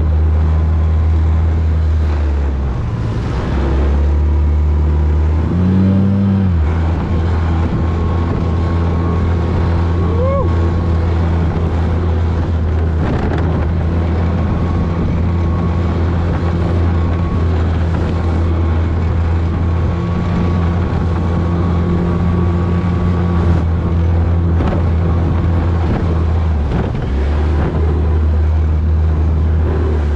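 Motorboat engine running with a steady low drone that dips briefly a few seconds in and again near the end, with some wind noise on the microphone.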